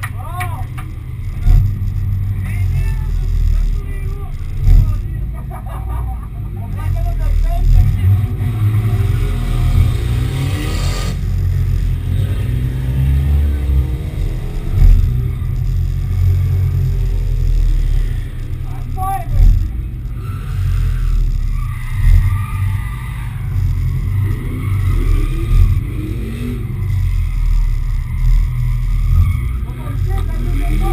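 Drift car's engine running while stationary, heard as a heavy low rumble with short louder swells every few seconds; faint voices in the background.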